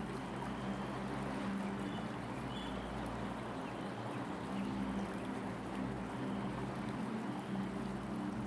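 Quiet ambient drone music: low, held tones that shift slightly, with a few faint high notes.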